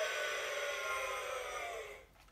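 Toy iCarly remote playing one of its recorded sound effects through its small built-in speaker: a steady, thin sound with no bass that lasts about two seconds and then cuts off.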